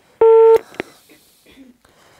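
Telephone busy tone on the phone line: one steady beep near the start that cuts off sharply, followed by a click. It is the sign that the caller's call has ended.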